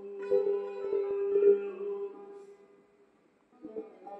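Plucked long-necked Persian lute playing a slow phrase of struck notes that ring and fade away about two and a half seconds in. A few fresh plucks follow near the end.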